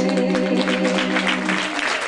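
Audience applause breaking out over the song's final held note, which dies away about one and a half seconds in, leaving only the clapping.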